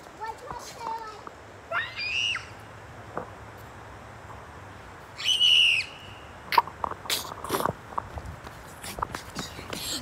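A girl shouting loudly, high-pitched: a short yell about two seconds in, then a longer, louder one about five seconds in. A few sharp knocks follow.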